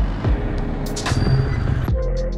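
Electronic background music with drum hits, over the running engine of a 450 cc quad bike on the move.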